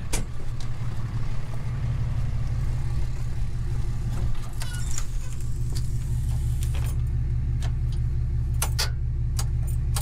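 An engine running steadily at a constant speed, with a handful of sharp clicks and knocks as the fuel hose and nozzle are handled.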